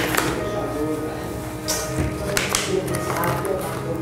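Background music with held notes throughout, over which a few short crinkles and clicks sound as the packaging of a prefilled dermal filler syringe is torn open by hand.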